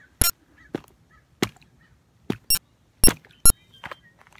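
Thin lake ice cracking under a foot pressing on it: about seven sharp, separate cracks, irregularly spaced, with near quiet between.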